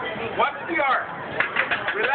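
Voices of people talking outdoors, with a quick run of short clicks or knocks near the end.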